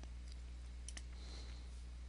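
Faint computer-mouse button clicks, two close together about a second in, over a steady low electrical hum.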